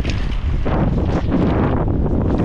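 Loud wind buffeting the camera microphone on a moving gravel bike, mixed with the rumble of the tyres rolling over a grassy track.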